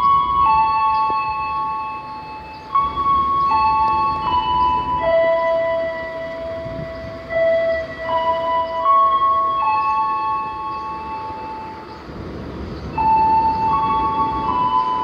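A slow melody of held notes, each lasting a second or two and stepping between a few pitches, over faint background noise.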